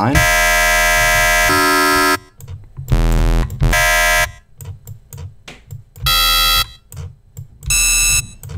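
Notes from the Serum software synthesizer playing an FM patch run through a square wave: a buzzy tone with many harmonics. It sounds as four held notes, the first about two seconds long and changing timbre partway through, the rest shorter. The timbre shifts from note to note as harmonic bins in the FFT editor are changed, with faint clicks between the notes.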